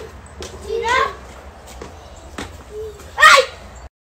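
A child's high-pitched voice in short calls and exclamations, with two rising calls about a second in and near the end, the later one the loudest, over a steady low hum.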